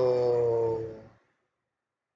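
A man's voice holding a long, drawn-out "So…", with the pitch sinking slightly. It fades out a little after a second in.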